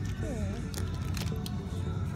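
Background music and a voice, with a few short crinkles and clicks from a clear plastic bag holding a card sleeve as it is handled.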